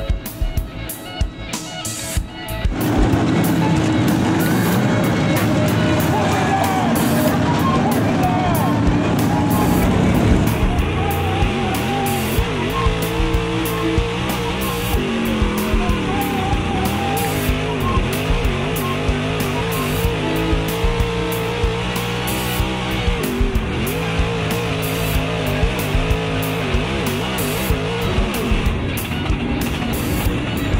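Music with guitar laid over dirt super late model race cars running at speed, their engines rising and falling. The car sound comes in louder about three seconds in.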